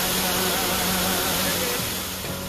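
Steady rush of stream water, with a song playing over it.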